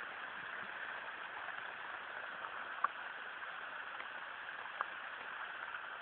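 Heavy rain falling in a steady hiss, with a few louder single drops tapping nearby.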